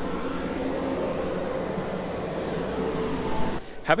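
A steady motor hum, several low tones held level, that cuts off suddenly near the end.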